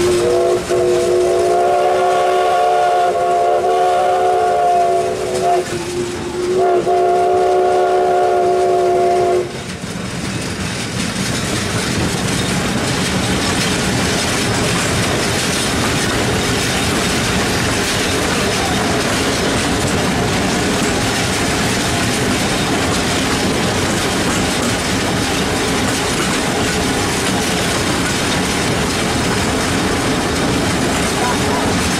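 Multi-chime steam whistle sounding a chord in two long blasts, the first about five seconds, the second about three, separated by a brief break; a steady, unpitched noise carries on after the whistle stops.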